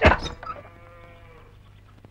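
A short loud sound at the start, then a faint, drawn-out animal call lasting about a second and a half, its pitch sinking slightly at the end.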